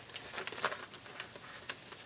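Clear cellophane bag crinkling faintly as it is opened and handled, a few scattered crackles.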